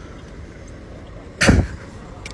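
Steady low hum of a car and street traffic, heard from inside a car with its window open, broken by a man's single short shout about one and a half seconds in.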